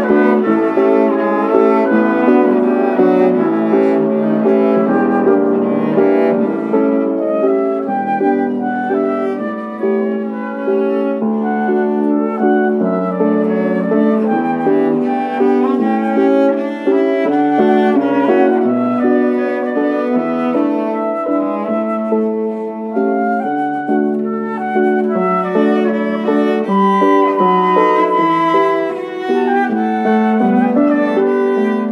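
Piano, flute and cello trio playing an instrumental piece, the flute carrying a melody over the cello and piano, continuously throughout.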